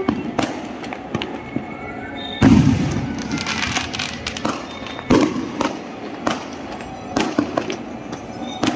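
Aerial fireworks launching and bursting: a string of sharp bangs at uneven intervals, the loudest about two and a half seconds in.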